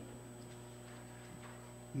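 Quiet room tone in a church pause: a steady low electrical hum with nothing else standing out.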